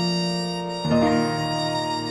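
Violin and piano playing an instrumental introduction: the violin holds long bowed notes over sustained piano chords, and a new chord is struck a little under a second in.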